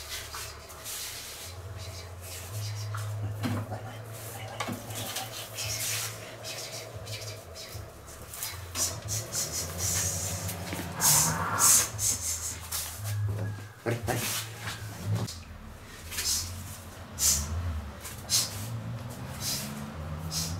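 Indian crested porcupine rattling its raised quills and scuffling about, in a run of sharp, dry clattering bursts that are densest and loudest about ten to twelve seconds in.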